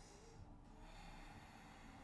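Near silence with a person's faint breathing, a soft airy exhale from just under a second in.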